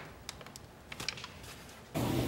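Faint crinkling of a crumpled paper sheet being smoothed flat by hand: a handful of small, scattered clicks and crackles.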